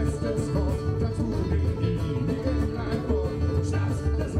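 Live acoustic string band playing bluegrass-style rock: strummed acoustic guitars and mandolin over a steady, rhythmic bass.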